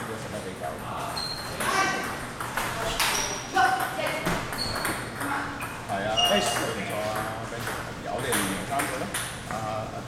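Table tennis ball clicking off paddles and the table in short rallies, with high pitched pings, while people talk in the hall.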